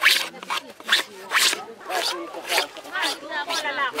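Dried banana leaf being scraped by hand in short, even strokes, about two a second, as thin green strips curl off the leaf surface in the making of doba. Voices talk faintly underneath.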